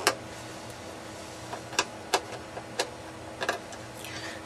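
Sharp metallic clicks of a screwdriver and loose screws against a DVD player's sheet-metal case as the case screws are taken out. There are about six irregular clicks, the first the loudest, over a steady faint hum.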